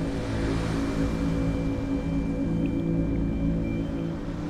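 Dark, sustained drone music: low held tones over a deep rumble, with a few faint high notes held above.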